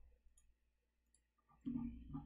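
A few faint computer clicks from keyboard and mouse, then, near the end, a short, louder, low voice sound.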